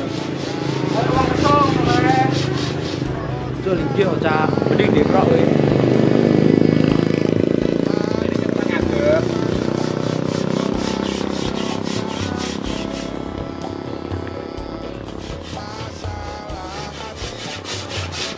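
Sandpaper on a sanding block rubbing back and forth over a wooden cabinet panel, under music with a voice singing.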